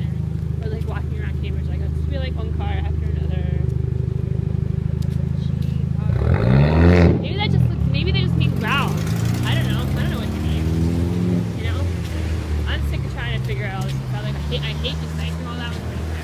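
Road traffic: a steady low engine hum, then a vehicle passing close about six to seven seconds in, the loudest moment, followed by engine notes rising in pitch as vehicles pick up speed.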